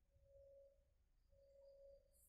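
Near silence, broken by two faint steady tones of one pitch, each a little under a second long.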